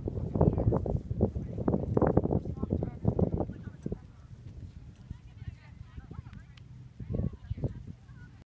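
Indistinct talking close to the recorder, busiest in the first half and again briefly near the end, with no clear words.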